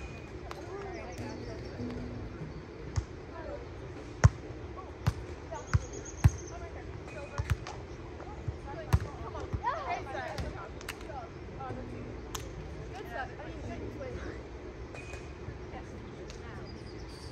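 Volleyball struck by players' hands and forearms during a beach volleyball rally: a string of sharp slaps between about three and thirteen seconds in, the loudest about four seconds in.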